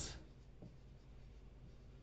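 Faint squeak and scratch of a felt-tip marker writing on a whiteboard.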